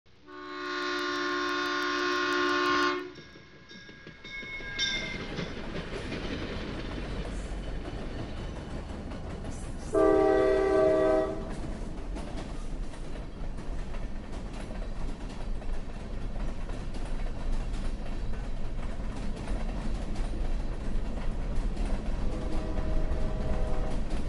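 A train horn sounds for about three seconds. The low rumble of a moving train then builds up, broken by a second, shorter horn blast about ten seconds in, and runs on steadily.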